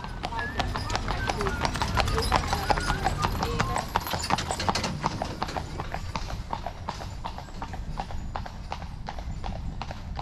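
Horse hooves clip-clopping on a hard surface, many quick irregular knocks, over a low rumble with faint voices.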